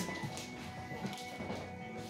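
Music playing quietly, with held notes.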